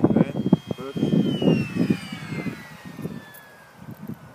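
High-pitched whine of a Multiplex Funjet Ultra's electric motor and pusher prop. It holds steady, then falls in pitch and fades over a couple of seconds as the jet comes in low. Gusty wind buffets the microphone underneath.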